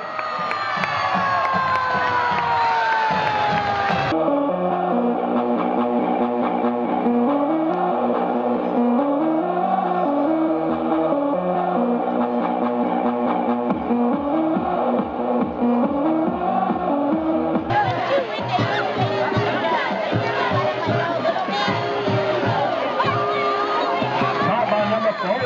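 A high school marching band's brass and sousaphones playing a tune in the stands, stepping note by note. It opens with a long falling tone for about four seconds, and a noisy crowd cheering takes over from a little past two-thirds of the way through.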